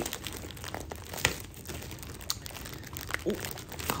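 Tightly wrapped gift packaging being crinkled and torn open by hand, an irregular crackle with a few sharper snaps.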